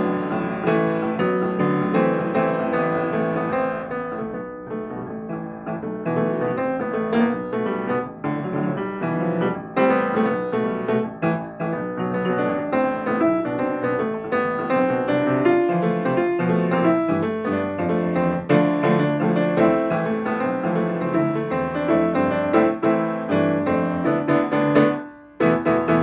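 Solo Baldwin grand piano playing a tune, with chords and melody notes in a continuous flow.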